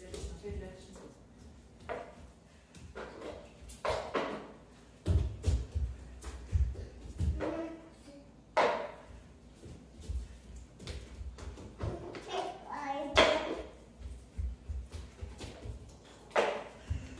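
Children's short calls and exclamations during play, with thudding bare footsteps running on a wooden floor.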